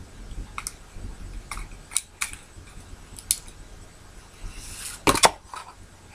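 Sharp plastic clicks and snaps from handling a new compact digital camera, about five scattered clicks, then a louder cluster of clicks about five seconds in.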